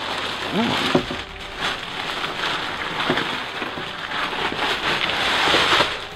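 Crinkly plastic shower curtain rustling as it is pulled down from the ceiling and drawn around a camper's wet area, loudest toward the end.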